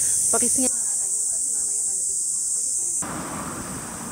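Cicadas buzzing, a steady high-pitched shrill that drops away about three seconds in.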